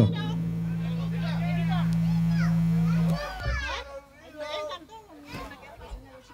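A steady low drone of a few low tones held together, swelling slightly for about three seconds and then cutting off, followed by a single thump, with children's voices and chatter over it.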